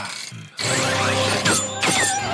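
Anime fight soundtrack: dramatic music under mechanical sound effects for blades strung on taut wires. The sound is quieter for the first half second, then comes in loud, with two falling swishes near the end.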